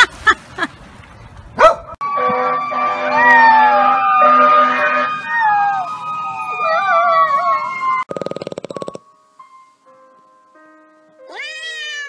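A beagle puppy howling in long, wavering glides for about six seconds, over a steady held tone.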